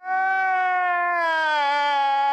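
A man wailing in one long, drawn-out cry whose pitch slowly falls.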